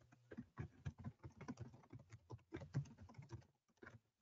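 Faint typing on a computer keyboard: a quick, irregular run of key clicks that thins out near the end.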